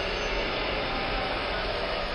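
Steady rumbling, hissing noise from a Halloween display's spooky soundtrack, running without a break between passages of music.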